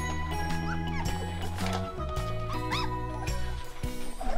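Background music with sustained bass notes, over which young Weimaraner puppies give a few short, high whimpers about a second apart.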